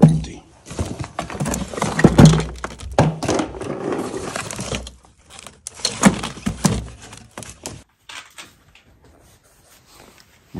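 Rummaging through a wooden crate of stored belongings: irregular knocks, thumps and rustling as binders, papers and plastic boxes are lifted and shifted. It falls quiet about eight seconds in.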